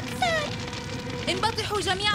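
A cat meowing: one short, falling cry near the start, over faint background music.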